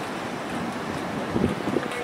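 Steady outdoor street noise, a constant hiss with wind rumbling on the microphone.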